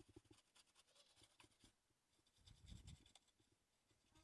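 Very faint scratching of a small brush scrubbing a corroded graphics card's circuit board, with a soft low bump about three seconds in.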